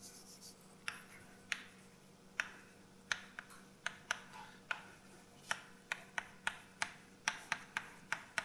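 Chalk writing on a blackboard: a string of sharp taps and short scratches, a few at first and then coming faster, several a second, in the second half.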